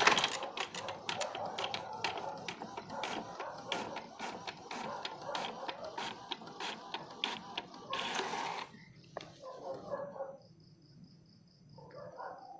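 Epson L120 ink-tank inkjet printer printing a Windows test page. The print head carriage shuttles back and forth with a rapid run of clicks over a mechanical whirr, a short louder rush comes about eight seconds in, and then the printing stops.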